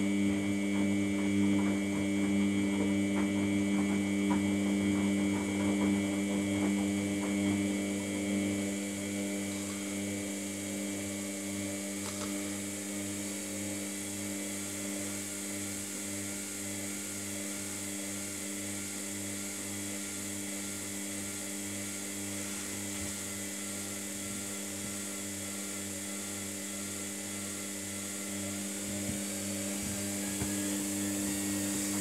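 Samsung WF80 front-loading washing machine running with a steady motor hum as the drum turns at slow spin speed, the laundry pinned against the drum wall.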